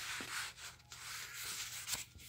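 Paper pages of a small paperback book being turned and rubbed by hand: a soft, uneven papery rustle.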